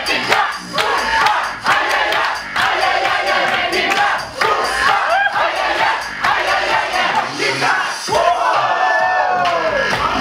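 Crowd of spectators cheering and shouting over electro dance music.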